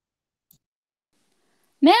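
Near silence on a video-call line, with one faint click about half a second in; a woman starts speaking near the end.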